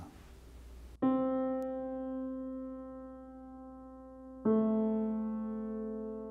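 Steinway grand piano played slowly: one chord struck about a second in and left to ring and fade, then a second chord about three and a half seconds later, also held and fading.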